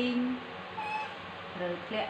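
A baby monkey giving a short, thin, high-pitched call about a second in, next to a woman's voice.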